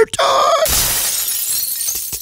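A produced transition sound effect: a brief tone, then about half a second in a sudden glass-shattering crash that thins out over the next second and a half.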